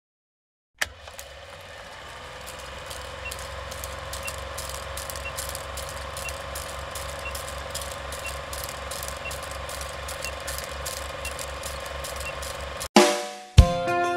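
Old film projector sound effect under a countdown leader: a steady running whir with a fast mechanical clatter and a faint tick once a second, starting suddenly about a second in. Near the end it breaks off with a sharp hit and music begins.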